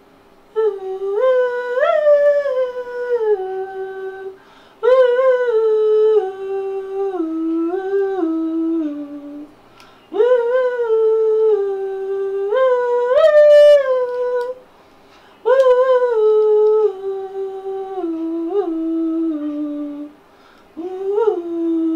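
A single voice humming a wordless melody in four long phrases with short pauses between them. Each phrase rises at its start and then steps down in pitch, in the manner of a vocal line being tried out over headphones.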